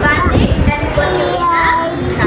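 A group of children's voices reciting aloud together in a drawn-out, sing-song chorus.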